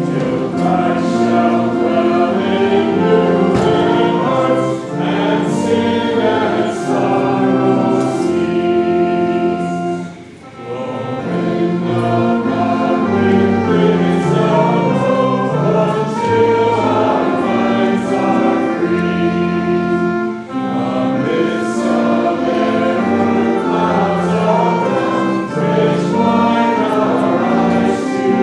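Worship song sung by a small group of singers in several voices, held notes moving from phrase to phrase, with a short break between phrases about ten seconds in.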